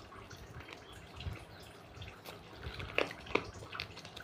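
Close-up wet chewing and mouth smacks of someone eating a piece of chicken by hand, with a couple of sharper smacks about three seconds in.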